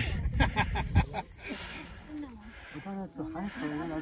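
People talking indistinctly, louder in the first second, over a steady low rumble of wind on the microphone.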